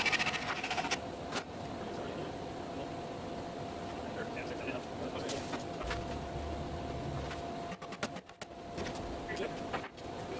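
Bar clamps being worked onto a wooden cabinet frame: a quick run of ratchet clicks in the first second as a one-handed bar clamp is squeezed, then a few single knocks as clamps are set against the wood, over a steady hum.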